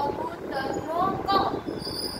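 Speech only: a woman's voice talking in a drawn-out, sing-song teaching manner.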